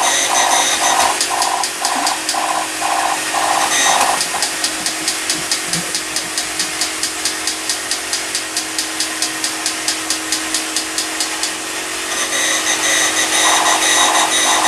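Several tin toy robots running together. Their motors give a steady whir, with a pulsing warble about one and a half times a second. From about four seconds in there is a fast, even clicking of gears, about five clicks a second, which stops near the end.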